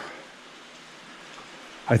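Steady rain, heard as an even hiss.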